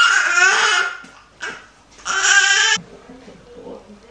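A baby crying in two loud wails: one about a second long at the start, then a shorter one about two seconds in.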